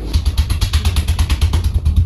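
Handheld electric percussion massager hammering rapidly against a person's back, about ten beats a second, with a pulsing low motor rumble.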